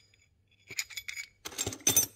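Steel brackets and bolts clinking against each other as they are handled in a cardboard box full of them. It starts with scattered clinks about half a second in and builds to a denser clatter near the end as parts drop back onto the pile.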